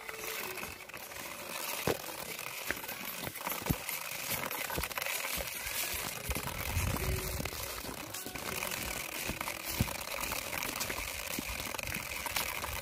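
Plastic toy truck wheels rolling over gritty concrete: a steady scraping rattle with scattered sharp clicks.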